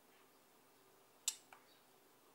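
One sharp click about a second in, followed by a smaller tick, against near silence: the power switch of a live-streaming sound card being pressed to turn it on.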